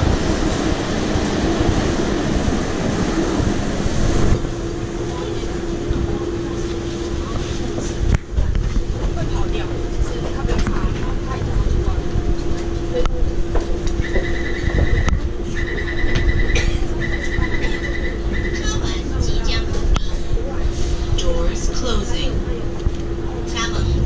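Taipei Metro train standing at the platform: a loud mix of car and platform noise, then a steady low hum from the car. About 14 s in come three runs of rapid high beeping, the door-closing warning.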